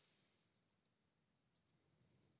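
Near silence, broken by two faint pairs of computer mouse clicks, the first a little under a second in and the second about halfway through.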